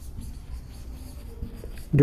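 Marker pen writing on a whiteboard: a run of short scratchy strokes as letters are written, over a low steady hum.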